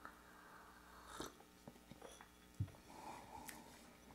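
Faint sounds of a man tasting coffee from a small glass: a soft sip about a second in, then a short low knock as the glass is set down on the table, with a few small clicks.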